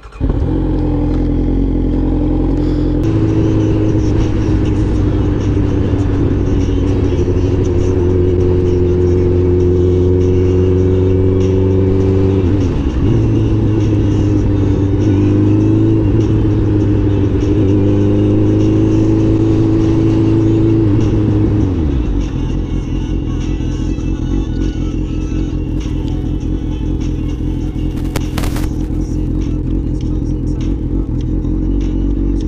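Motorcycle engine under way at a steady cruise, its note drifting slowly in pitch. There is a brief dip about twelve seconds in, and the revs fall away about twenty-one seconds in into a rougher, lower running sound.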